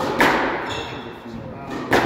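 Squash ball struck hard by racket and hitting the walls in a fast rally: two sharp cracks about a second and three quarters apart, each echoing in the enclosed court, with a brief high squeak of court shoes between them.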